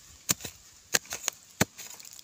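A hand digging tool chopping into dry, hard soil and woody roots while digging out wild yam: a quick run of sharp strikes, about seven in two seconds, three of them heavier than the rest.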